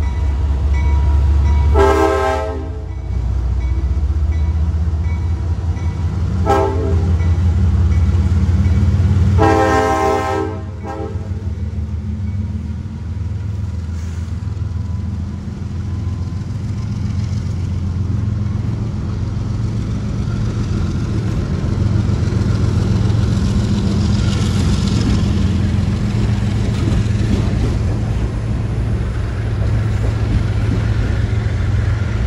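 CSX diesel locomotive's air horn sounding three blasts (long, short, long) about 2, 6.5 and 10 seconds in, over the steady low rumble of its engine. After that, refrigerated boxcars roll past with a continuous rumble of wheels on rail.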